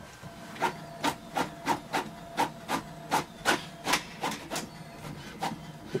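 Brother MFC-J491DW inkjet printer printing a page: a regular clack about three times a second as the print head shuttles across, over a faint steady hum.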